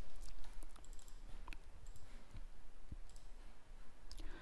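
A few faint, short computer mouse clicks at irregular intervals over low room hum.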